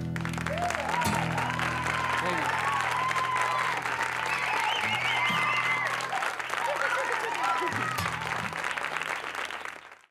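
Studio audience applauding and cheering at the end of a song, with rising and falling voiced calls over the clapping. The applause fades out quickly near the end.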